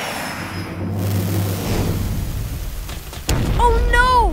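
Cartoon jet-flight sound effect: a long, noisy rush of thrusters with a low rumble as a robot jet plane flies past, then a sharp thud a little over three seconds in.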